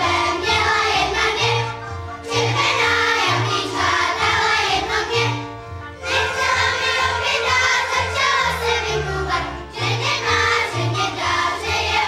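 Children's folk choir singing a folk song together over string-band accompaniment with a pulsing bass line, in phrases of about four seconds with short breaks between them.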